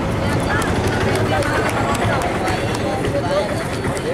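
Voices talking in the background over a steady outdoor din.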